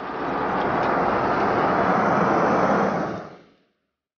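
A rushing noise that swells up, holds for about two seconds and dies away near the end.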